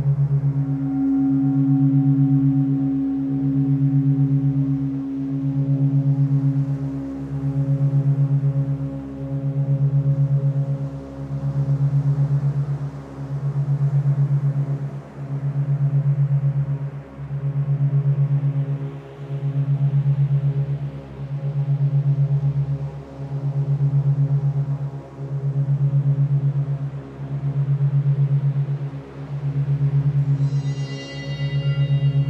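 Meditation drone of monaural beats: a low tone near 136 Hz with a fast 8-per-second flutter, swelling and fading about every two seconds, under soft sustained ambient tones. A higher held tone comes in about a second in and slowly fades.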